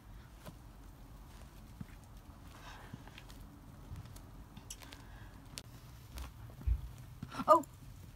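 Gloved hands scratching and scraping in dry straw and loose dirt, with scattered small clicks and a low thump near the end.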